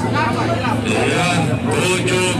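Voices talking loudly over crowd babble, with a steady low hum underneath.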